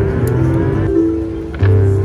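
Three-reel slot machine spinning: a tune of repeating electronic chime notes with a rising sweep in the first second, then a heavier thump about one and a half seconds in as a reel stops.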